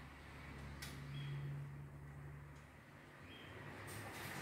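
Quiet hand work at a mini bike's small two-stroke engine, likely fitting the spark plug lead: two light clicks, about a second in and near the end, over a faint low hum that fades out after a couple of seconds.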